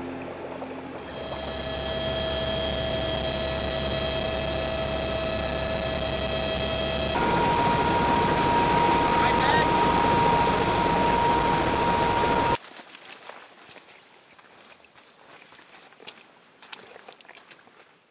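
Helicopter cabin noise: a steady turbine whine over a rumble. It gets louder with a higher whine about seven seconds in, then cuts off suddenly about two-thirds of the way through. After that it is quiet, with faint scuffs of footsteps on a gravel trail.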